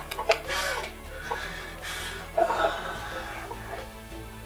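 Men sobbing in short, broken bursts over background music, the loudest burst about two and a half seconds in.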